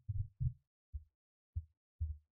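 A few short, dull low thumps, irregularly spaced, about five in two seconds, against silence.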